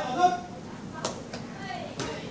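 A short vocal sound from a person at the start, then a single sharp slap about a second in.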